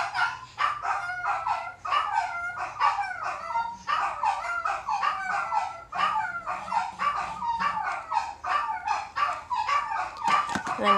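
Dogs barking in quick, continuous volleys, several barks a second.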